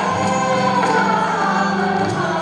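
Live Indian classical ensemble: a group of voices singing together over sitars and several pairs of tabla, with a steady low drone underneath.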